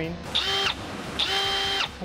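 Milwaukee cordless ProPEX expander tool running in two short bursts, each a steady whine that winds down as it stops, expanding the end of a three-inch Uponor PEX pipe to take a fitting.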